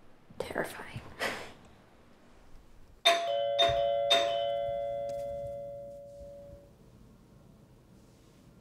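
Doorbell chime: three struck notes about half a second apart, ringing on and fading out over the next few seconds.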